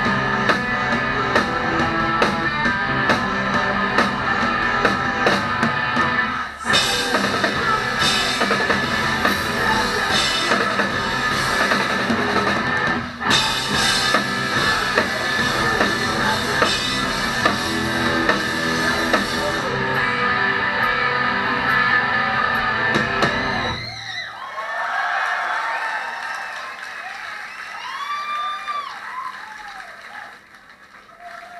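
Live rock band playing with drum kit and amplified electric guitars and bass, with two brief breaks about six and a half and thirteen seconds in. About six seconds before the end the band stops together, leaving quieter guitar tones that bend up and down in pitch as the song rings out.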